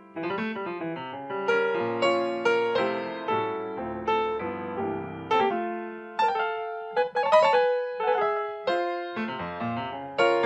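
Grand piano played solo: single notes and chords, each struck and left to ring and fade, with the loudest accents about seven seconds in.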